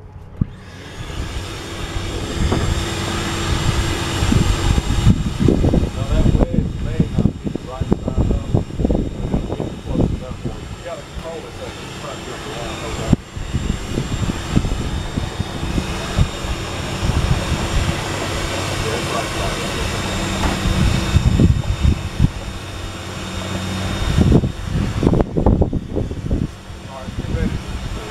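Wet/dry shop vacuum switched on about half a second in and then running steadily, a constant motor whine.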